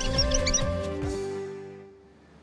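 Theme music ending: the beat stops about a second in and the last held notes fade out, with a quick flurry of short high squeaks near the start.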